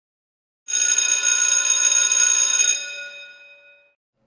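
Electric school bell ringing loudly with a fast, rattling flutter, starting about a second in, then cutting off and ringing out over about a second.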